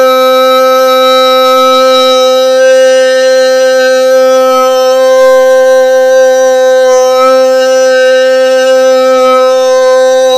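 A man toning, holding one long vocal note at a steady pitch with a rich, buzzy overtone.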